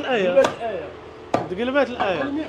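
Butcher's cleaver chopping meat on a wooden log chopping block: two sharp strikes about a second apart.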